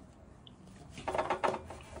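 A table knife sawing through grilled steak on a cutting board: quiet at first, then a short run of quick scrapes and taps about a second in.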